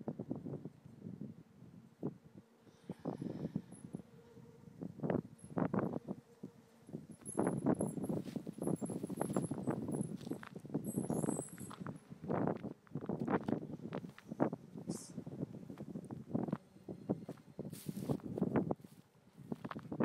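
Footsteps through tall dry grass, the stalks rustling and brushing with each step. The steps are uneven and sparse at first, then come thicker and louder from about seven seconds in.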